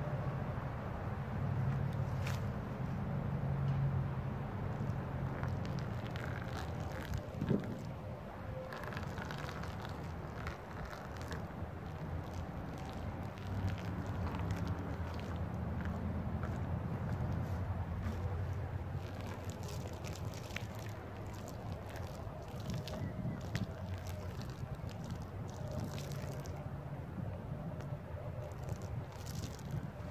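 Coffee mixture splashing and sloshing in short spells as it is poured from a container onto cotton shirts, over a steady low rumble of wind on the microphone.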